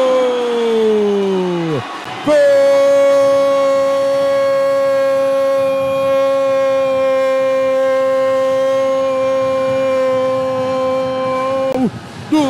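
A male sports commentator's drawn-out goal shout, "Gooool": a first call sliding down in pitch, then one steady note held for about nine seconds that drops away near the end.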